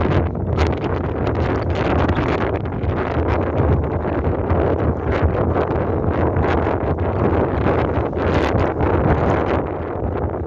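Wind buffeting the microphone in loud, gusty rushes, over a steady low hum from the moving ferry.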